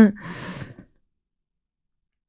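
A woman says "okay" and lets out a breathy sigh under a second long, which cuts off sharply.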